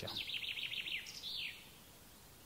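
A songbird singing: a quick run of about eight short, high notes, each falling in pitch, followed a moment later by a single downward-sliding note.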